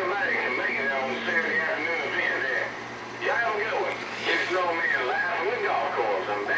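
Voices of CB operators coming over the air through a Galaxy Saturn base-station radio's speaker, a thin radio-sounding talk with short pauses and a faint steady hum underneath.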